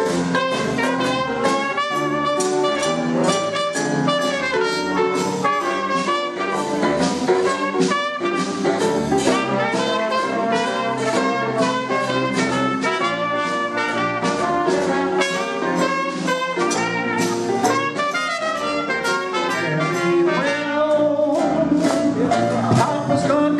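Traditional jazz band playing together: trumpets and trombones on the melody over tuba, piano and a steady drum beat.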